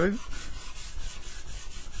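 Small sanding sponge rubbing over a painted wooden scale-model door in quick back-and-forth strokes, a soft scratchy hiss, sanding back a dried black wash.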